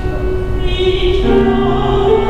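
A female opera singer, accompanied on grand piano, comes in with a held note sung with vibrato about half a second in, as the piano sounds new chords beneath her.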